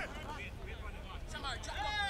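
Indistinct voices calling out and shouting, growing louder and more continuous near the end, over a steady low rumble.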